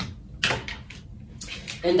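A few short rustles and taps of shipping-label paper being handled on a desk.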